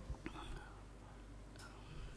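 A pause in speech: quiet room tone with a low steady hum, and faint, soft voice sounds briefly about a quarter second in and again near the end.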